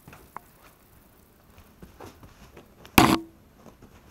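Light scattered ticks and rustles from a camera riding on a walking Border Collie's back, with one loud, sharp knock about three seconds in.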